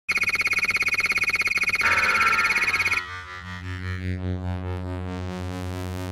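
Synthesized retro-computer start-up sound effects: a fast-pulsing high electronic buzz, about a dozen pulses a second, with a burst of static near two seconds in, which cuts off at three seconds into a steady low synthesizer drone.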